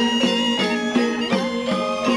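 Balinese gamelan angklung music for a Pitra Yadnya cremation rite: bronze metallophones strike notes about three times a second, each note ringing on into the next.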